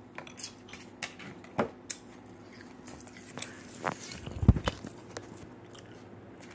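Handling noise as the camera is picked up and moved on a table: scattered clicks and knocks, with one heavy thump a little past halfway as it is set down.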